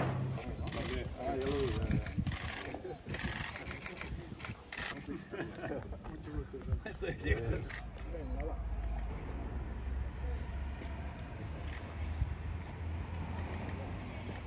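Indistinct murmur of several men talking, then, about halfway through, a steady low rumble with a few faint clicks.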